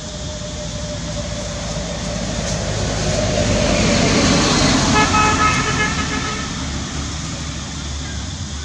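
A road vehicle passing, growing louder to a peak about four seconds in and then fading, with a steady horn toot of about a second and a half just after the peak.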